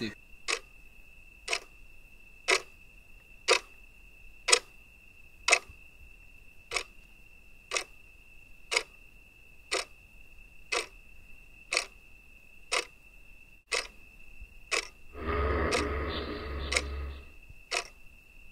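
Clock ticking about once a second over a steady high-pitched whine. Near the end a louder, rough noise swells for about two seconds.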